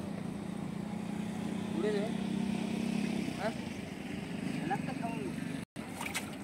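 A boat motor running steadily, a low hum, with a few faint distant voices over it. The sound drops out for a moment near the end.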